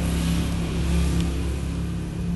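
A steady low hum and rumble with an even hiss over it.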